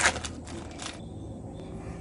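A few short rustling handling sounds in the first second as hands lay a cheese slice and bread onto the sandwich, then a faint low hum.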